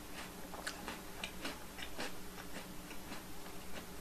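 Faint, irregular clicks of someone chewing a chocolate-coated biscuit and sipping drinking yogurt from a plastic cup.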